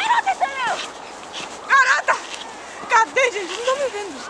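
A child's high-pitched squeals and cries without words, in several short bursts while tugging at something half-buried in snow.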